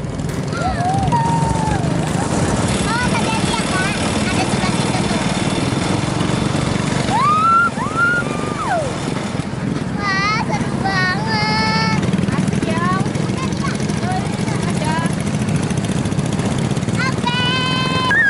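Small go-kart engine running steadily under way, with a girl's high-pitched shrieks and laughter coming in short bursts a few times.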